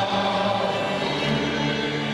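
Live Hungarian folk band music: fiddles and double bass playing held notes, with voices singing.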